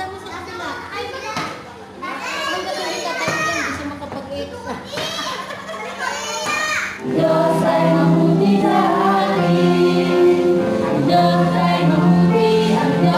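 Children shouting and squealing excitedly in a game. About seven seconds in, a song starts playing loudly with singing and a steady beat, and it is louder than the children.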